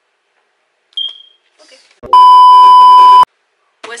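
A loud, steady, single-pitch censor bleep lasting about a second, starting about two seconds in. A brief high blip sounds about a second in.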